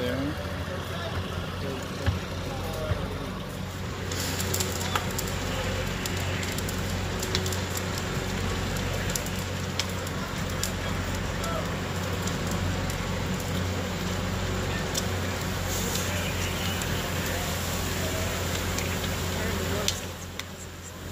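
A burning wood-frame house crackling and popping over a steady rushing noise, with the steady low drone of a fire engine's pump running underneath. The rushing noise and crackles grow stronger about four seconds in.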